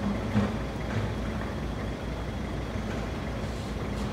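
A steady low rumble with an even hiss underneath, with no distinct events.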